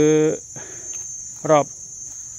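A steady, high-pitched insect chorus that runs on without a break, under a man's voice.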